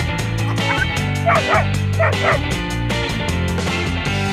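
A cartoon dog gives a few short, high yipping barks over background music. The loudest barks come about one and two seconds in.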